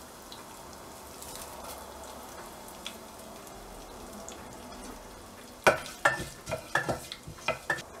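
Curry leaves and cumin seeds sizzling in hot fat in a pressure cooker, a faint steady hiss with scattered small crackles. A little over halfway through comes a sudden louder burst of sharp crackles and knocks as the tempering is stirred.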